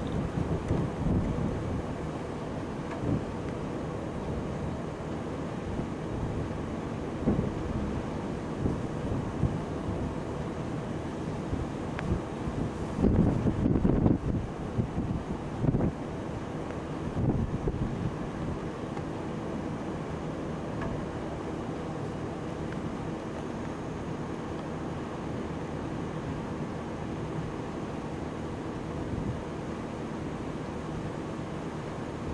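Wind buffeting the microphone in a steady low rumble, with stronger gusts about halfway through. A faint steady hum runs underneath.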